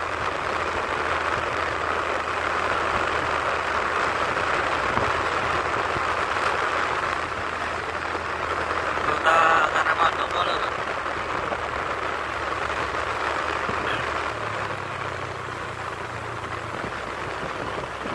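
Car driving at steady speed: continuous road and engine noise, with a brief pitched sound about nine seconds in.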